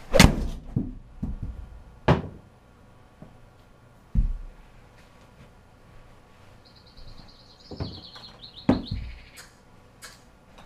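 A 6-iron striking a golf ball off a hitting mat, the shot sharp and loud, the ball slapping into the simulator's impact screen at almost the same instant, followed by a few duller thuds as it drops and bounces around. Later come a short high chirping sound and two more light knocks.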